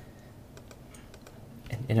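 Faint computer keyboard keystrokes: a few scattered clicks. A man's voice starts near the end.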